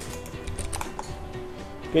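Quiet background music with a few light clicks at the computer, bunched between about half a second and a second in.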